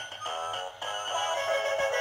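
Peterkin interactive Santa and snowman plush toys playing an electronic Christmas carol tune through their built-in speakers.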